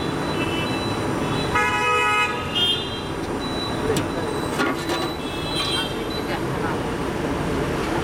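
Busy street background of people talking and traffic. A vehicle horn honks for about a second, starting about one and a half seconds in, and shorter toots sound at other moments.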